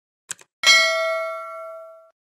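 Subscribe-button animation sound effect: a short mouse click, then a bright bell-like ding that rings on and fades away over about a second and a half.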